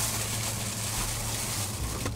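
Steady low hum with an even hiss inside a parked car's cabin, the sound of the car idling.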